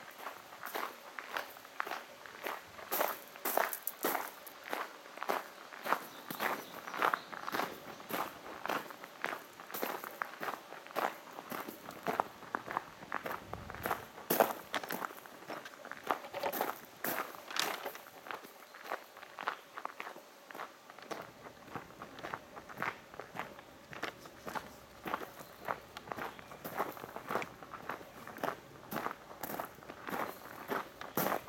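Footsteps walking steadily on a gravel path, about two steps a second, each step a short crunch.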